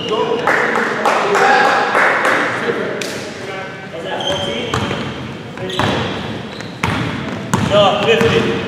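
Indoor basketball play on a hardwood gym floor: sneakers squeaking in short high chirps, a basketball bouncing, and players calling out, ringing in the large hall.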